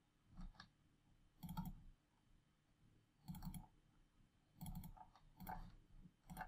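Faint computer mouse clicks, in quick pairs like double-clicks, about five times at intervals of a second or so while folders are opened in a file dialog.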